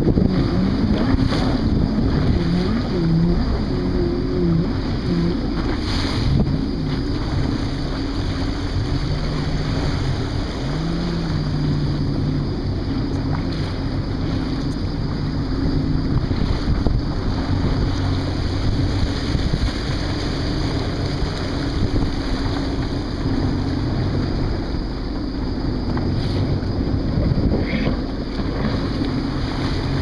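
Jet ski engine running, its pitch rising and falling with the throttle, under wind buffeting the microphone and the splash of choppy waves.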